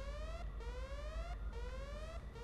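An electronic alarm whooping: a tone that rises in pitch, repeated about once a second, three whoops in all.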